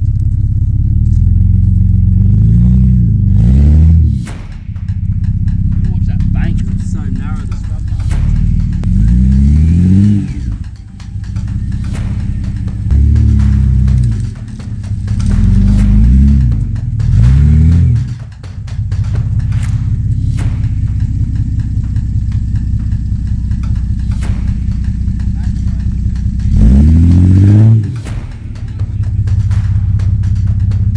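Toyota LandCruiser 100 Series engine running under load as the four-wheel drive crawls through deep ruts, its revs rising and falling in about five bursts of throttle.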